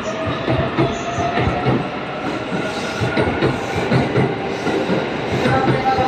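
E657 series electric multiple unit pulling out of the station, its cars rolling past close by with a rapid clatter of wheels over the rails.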